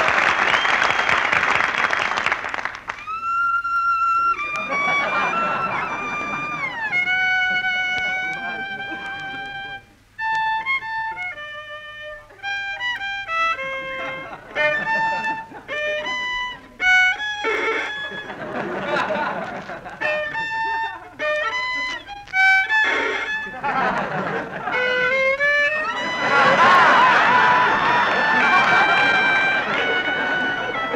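Solo violin playing a simple melody note by note, with a few sliding notes, broken several times by bursts of studio-audience laughter, on an old radio broadcast recording.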